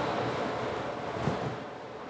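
Room tone: a steady hiss that slowly fades toward the end.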